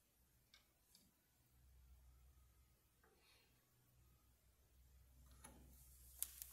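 Near silence, with a few faint clicks from a Bentele night clock being handled as its time is set.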